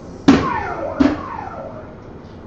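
Two soft-tip darts strike an electronic dartboard about 0.7 s apart. Each hit sets off the machine's falling electronic tone as it registers the score.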